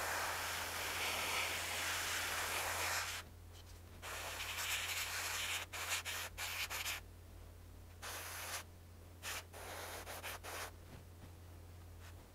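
Airbrush spraying paint onto a small plastic model part for its base coat: a steady hiss for about three seconds, then a run of shorter on-and-off bursts as the trigger is worked, fading toward the end.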